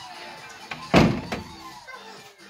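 A single loud thump about a second in, with a smaller knock just after, over background music.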